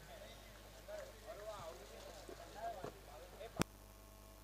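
Faint background voices and chatter at a cricket ground, with one sharp click near the end.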